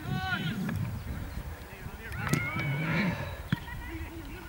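Distant shouts from players across a football pitch: a short high call at the start and a longer held call in the middle, with a couple of sharp knocks in between, over wind rumble on the microphone.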